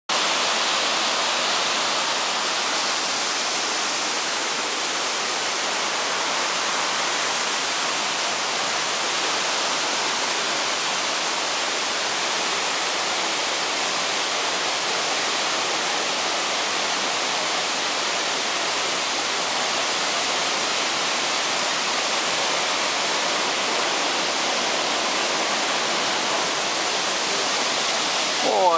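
A large forest waterfall and its stream running high, a steady rushing of water that is unchanging throughout.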